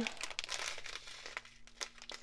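Thin plastic packets of diamond-painting resin drills crinkling and rustling in the hands as a strip of them is handled, faint and irregular.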